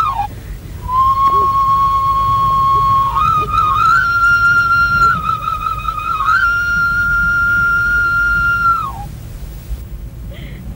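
Background music: a solo flute playing a few long held notes with short ornamented slides between them, rising in pitch over the phrase. The last note falls away about nine seconds in.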